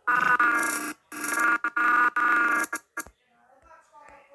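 An audio clip from the animation's own sound track playing back loudly, bright and pitched, like a voice or tune. It comes in three stretches with short breaks and stops about three seconds in.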